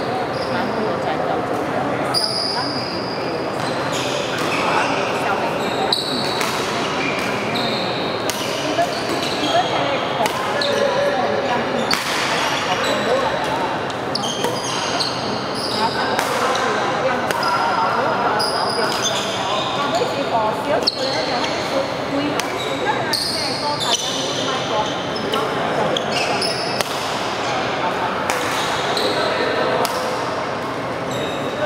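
Badminton rally in a large sports hall: rackets striking the shuttlecock, a sharp smack roughly every second or two, with short shoe squeaks on the court floor. Under it runs the hall's steady echoing hubbub of indistinct voices.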